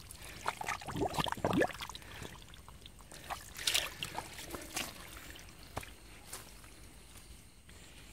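Hands sloshing and splashing in shallow muddy water while groping for fish, with irregular small splashes and drips that thin out in the last few seconds.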